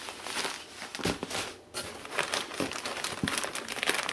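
Clear plastic bags crinkling and rustling in irregular bursts as they are handled, with a brief lull a little before the middle.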